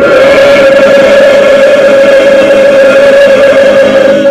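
A group singing in worship, holding one long note.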